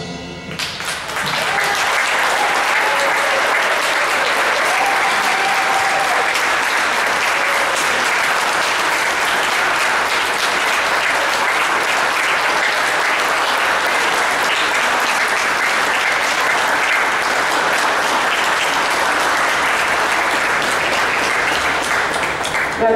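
Audience clapping in a large gymnasium, starting about a second in as the band's last note dies away and keeping up steadily.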